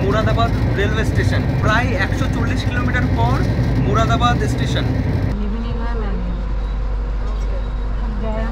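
A man speaking over the steady low hum of a train coach; about five seconds in, the sound cuts to a steady low rumble of the train running, with a faint wavering tone over it.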